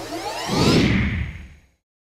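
Whoosh sound effect with rising, sweeping tones over a low rumble, swelling about half a second in and fading out before the end.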